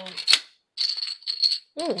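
Plastic Connect Four checkers: one sharp clack a third of a second in as a checker is dropped into the grid, then about a second of plastic checkers rattling and clattering together.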